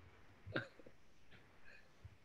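A short, faint vocal noise from a person about half a second in, followed by a few fainter small sounds over quiet room tone.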